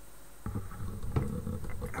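Low rumbling handling noise with scattered knocks, starting about half a second in: the camera being picked up and moved back from the model.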